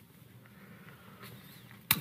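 A quiet pause with only faint room noise and a low hum, broken by one sharp click just before the end.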